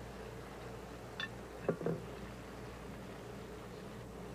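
A spoon knocking and scraping against a stainless steel pot a few times while rice is served from it, over a steady low hum.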